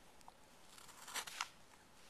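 Carving knife slicing a shaving off a wooden blank: a few crisp, crunchy cutting sounds about a second in, as the blade is dragged sideways while pushing through the wood.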